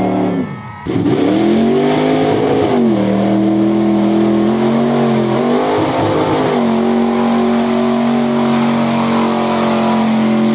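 Mud truck's engine running hard at high revs through a deep mud pit, its pitch sagging and climbing back twice under load, then holding high and steady. A brief drop in level about half a second in.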